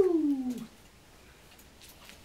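A single drawn-out vocal call, under a second long, sliding down in pitch, followed by quiet with faint rustles.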